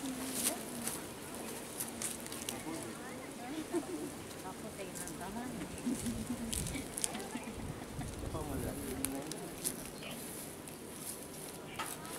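Indistinct low voices of a few people talking, with scattered short high ticks and chirps in the background.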